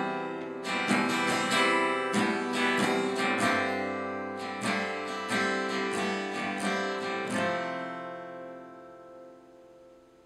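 Acoustic guitar strummed in chords, the last strum about seven and a half seconds in left to ring out and fade away.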